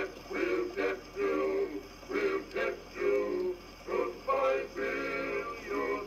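An Edison Diamond Disc Phonograph playing an acoustic 1917 recording of male voices singing a medley of army camp songs. The sound is thin and narrow, with phrases of held sung notes and short breaks between them.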